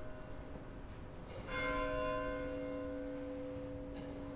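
Altar bell rung at the elevation of the host during the consecration. It is struck about one and a half seconds in, and its several tones ring on and fade slowly over the fainter ring of an earlier strike.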